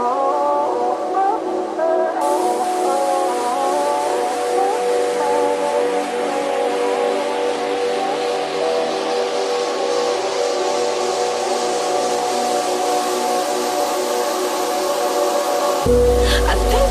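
Uplifting trance music in a breakdown: sustained synth pad chords with no kick drum or bass. A rising noise sweep comes in about two seconds in and grows steadily brighter, and the heavy bass and kick drop back in right at the end.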